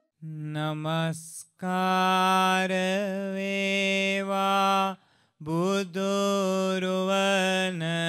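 A Buddhist monk chanting solo in a slow, drawn-out low voice. The chant comes in three phrases with short breaks between them, and the middle phrase is held for about three seconds.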